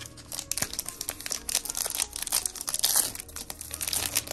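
A hockey card pack's wrapper being torn open and crinkled by hand: a dense run of crackling that starts about half a second in.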